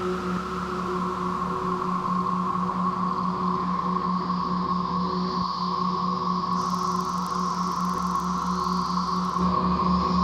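A dense chorus of 17-year periodical cicadas: one steady, unbroken droning whir at a single pitch, with a lower pulsing hum beneath it.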